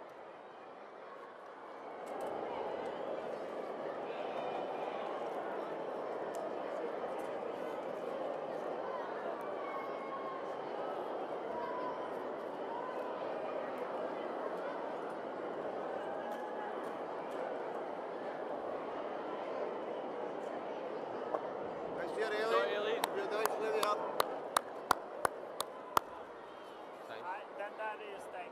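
A granite curling stone sliding down pebbled ice, heard as a steady rushing rumble from its release until it reaches the house about 20 seconds later. Near the end come a cluster of sharp clacks.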